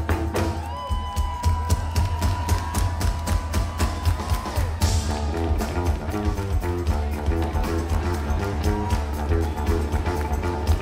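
Electric bass guitar solo played live through a concert PA, loud deep bass notes over a steady beat. A long high note is held from about a second in for a few seconds.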